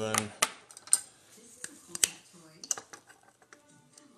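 A few sharp clicks and taps of trading cards and hard plastic card holders being handled and set down on a tabletop, with light handling noise between them.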